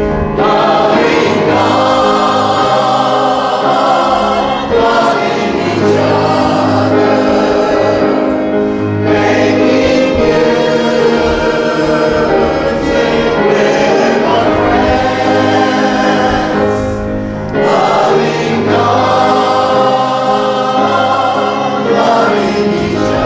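Congregation singing its closing song together as a group, steadily and without break.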